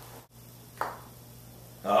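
A single short, sharp tap of a putter striking a golf ball, a little under a second in, followed by low room tone.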